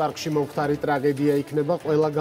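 Speech only: a man talking steadily in a low voice.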